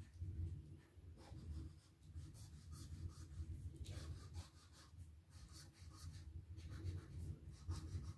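Faint scratch of a chalk marker's tip drawing letters on a board, in short, irregular strokes over a low rumble.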